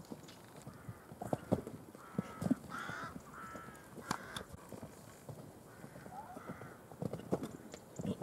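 A loose horse's hooves striking a sand arena surface as it canters, an irregular run of hoofbeats. A short series of pitched calls comes about three seconds in.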